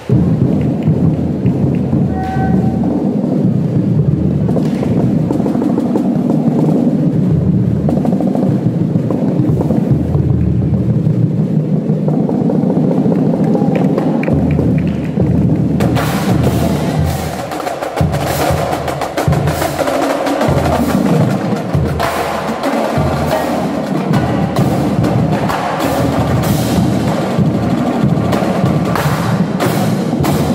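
Marching drumline playing snare, tenor and bass drums in a dense, fast rhythm. About halfway through, the sound turns brighter and sharper with crisp snare strokes and cymbal hits as the opposing line plays.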